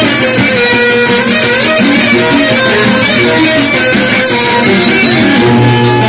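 Loud, amplified live folk music: a plucked string instrument plays a running melody within a full band, with a sliding note about five seconds in.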